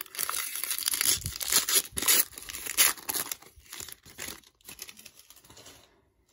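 Foil wrapper of a 2021 Legacy football trading card pack being torn open and crinkled by hand: a dense run of crackling tears, loudest in the first three seconds, then thinning out.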